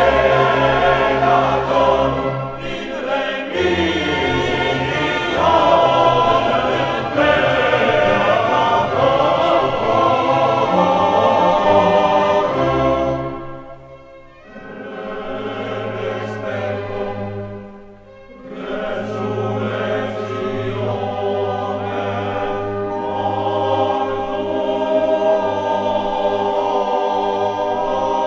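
Choir with orchestra performing a sacred mass movement in sustained sung chords over a held bass. About halfway through the music drops away twice in quick succession, then the choir carries on a little more softly.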